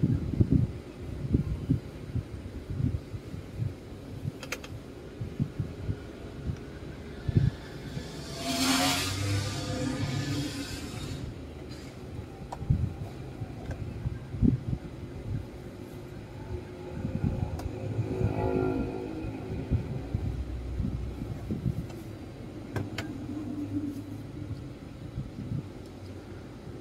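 Light knocks and clicks of a plastic instrument-cluster housing being handled on a workbench during soldering work. A motor vehicle is heard passing twice, swelling up about a third of the way in and again past the middle.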